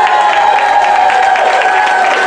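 Audience applauding and cheering at the end of a live rock'n'roll song, with a last held note from the stage fading out near the end.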